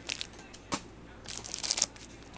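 Plastic product packaging crinkling as it is handled. A short rustle at the start and a single click come first, then a louder burst of crinkling in the second half.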